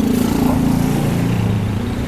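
A small motor vehicle engine running close by, its pitch sliding steadily down as it passes.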